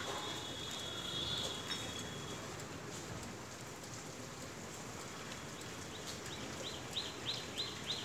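A bird chirping in a steady series of short high notes, about three a second, starting about six seconds in. Before that, over a faint background, a thin high whistle lasts a couple of seconds near the start.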